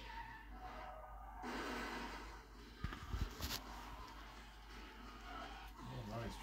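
Faint action-film soundtrack playing through a TV's speakers, with a few soft knocks and a brief rush of noise a little over three seconds in.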